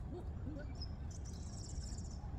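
Birds calling: a few short, low hooting calls in the first half second, then a high, rapid trill from about halfway through, over a steady low rumble.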